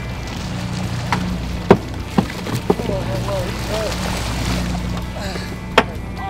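Steady low drone of a fishing boat with wind and water noise, a few sharp clicks, and faint voices in the background.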